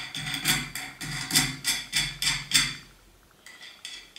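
Metal nut being spun by hand down an M6 threaded steel rod inside an empty 5-litre beer keg: a quick, even run of ringing metallic clicks, about four a second, with the tin keg resonating. It stops about three seconds in, leaving a few faint clicks.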